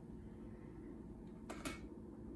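Quiet room tone with a steady low hum, and two small clicks close together about one and a half seconds in.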